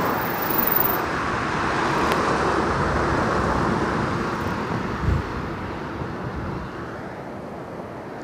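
Cars passing on the road, a steady rush of tyres and engines that is loudest early and slowly fades toward the end, with a brief low thump about five seconds in.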